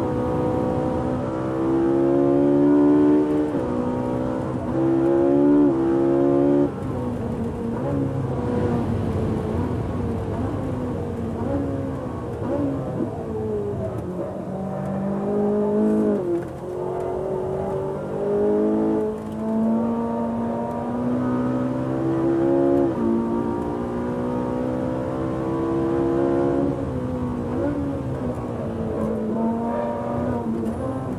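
Ferrari supercar engine at full throttle on a track lap. It revs hard and its pitch climbs and drops sharply at each upshift, several times in quick succession in the first seconds. It then falls away as the car slows for corners and climbs again on the next straights.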